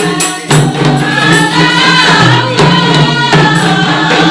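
Rebana qosidah: a group of voices sings an Islamic song together to rebana frame drums. Sharp drum strokes open, and the singing comes in about a second in.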